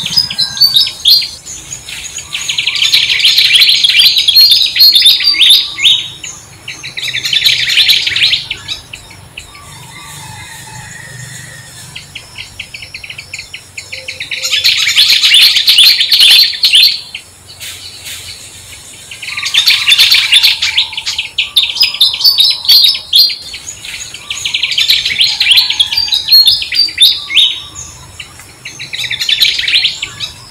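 Songbirds chirping in bursts of rapid, high twittering a few seconds long, about six times, with quieter pauses between.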